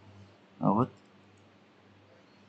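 Faint computer mouse clicks over a low steady hum, with one short spoken syllable a little before the middle.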